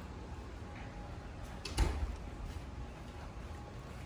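A single sharp knock about two seconds in, over a steady low background rumble.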